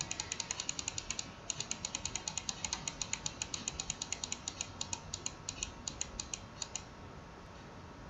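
Computer mouse making a rapid run of light clicks, about eight a second, with a short pause a little after a second in; the clicking stops about seven seconds in.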